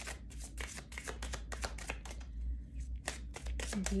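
A deck of oracle cards shuffled by hand: a quick, irregular run of soft card clicks and flicks.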